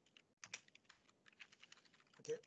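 Faint scattered keystrokes on a computer keyboard, a few quiet taps with the clearest about half a second in.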